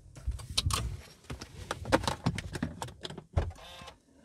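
Irregular small clicks, knocks and rustles inside a car cabin, over a low rumble.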